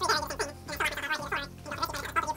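A man mumbling indistinctly to himself, thinking a move through aloud.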